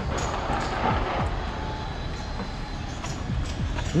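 Outdoor street noise: a steady low rumble with a hiss that swells briefly in the first second.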